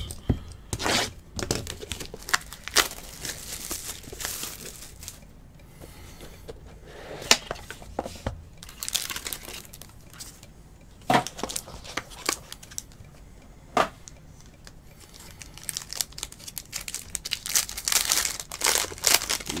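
Wrapping and a trading card box being torn open, with irregular crackles and a few sharper snaps, then a foil card pack crinkling as it is peeled open near the end.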